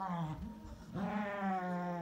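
Dog growling during a tug-of-war game over a rope toy: wavering growls, then one long drawn-out growl from about a second in.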